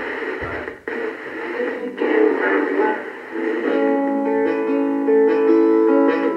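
A vintage Panasonic flip-clock radio being tuned, heard through its small speaker: snatches of broadcast sound, briefly dropping out about one and two seconds in, then settling a little past the middle on a music station with steady held notes.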